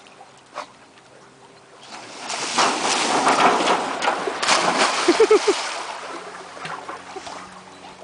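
A dog splashing as it jumps off a dock into a lake and churns through the water. The splashing builds about two seconds in, stays loud for a few seconds and then fades.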